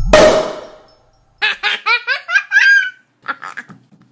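A logo jingle: a bright crash that fades over about a second, then a run of high-pitched giggling, with a shorter burst of laughter near the end.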